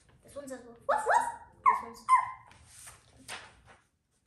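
A girl's voice imitating a small dog barking: four short yapping 'arf's in two quick pairs.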